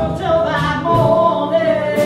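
Small jazz ensemble with keyboard and saxophone playing live: a lead line of long held notes gliding between pitches over keyboard accompaniment.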